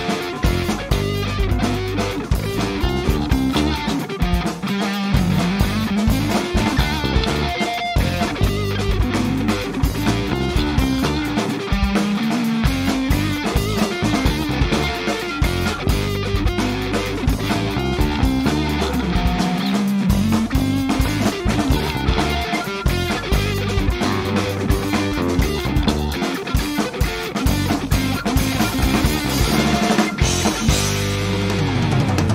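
Three-piece rock band playing live, with electric guitar, electric bass and drum kit and no vocals.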